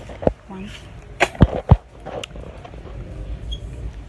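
Five sharp handling knocks and thumps within about two seconds, over a steady low store hum.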